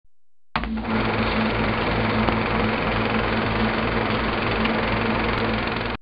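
Film projector running, a steady whirring clatter over a low hum, used as a sound effect under an intro logo; it starts about half a second in and cuts off suddenly.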